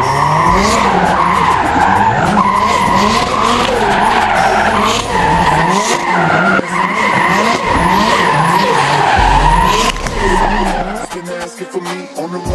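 Drift car sliding sideways with its tyres squealing continuously while the engine is revved hard, its pitch climbing and dropping back roughly once a second. The engine and squeal ease off near the end.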